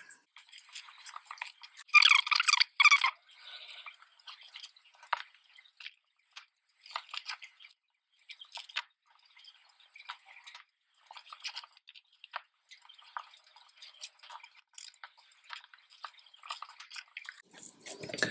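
Light rustling and small taps of paper strips being handled and pressed down by hand onto a card photo frame, with a louder paper rustle about two seconds in.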